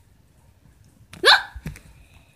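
A child's voice giving one short yelp with a quick upward sweep of pitch, a little after a second in, like a startled reaction.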